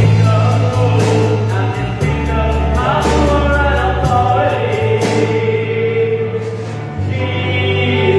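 Worship song sung by men into microphones over an amplified accompaniment with held bass notes and a light beat; the beat drops out about five seconds in.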